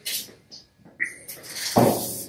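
Aerosol lubricant sprayed onto garage door rollers: a short hiss at the start, a brief high chirp about a second in, then a longer hiss that swells into a louder rush near the end.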